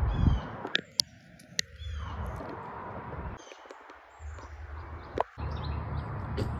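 Birds chirping in runs of short falling notes, with a few sharp clicks and a low rumble underneath.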